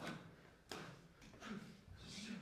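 Faint sounds of dancers moving together on a stage floor, with two sharp onsets that fade quickly: one at the start and one about two-thirds of a second in.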